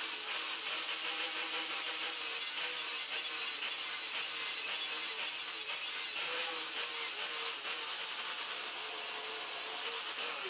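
Angle grinder grinding a steel knife blade clamped in a vise, running steadily under load with a high, gritty hiss over a steady motor whine.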